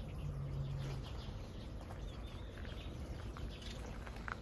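Faint outdoor background with a few scattered, distant bird chirps.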